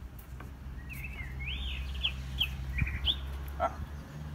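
Bird song: a warbling phrase of whistled, gliding notes about a second in, followed by a few short high notes, over a steady low rumble.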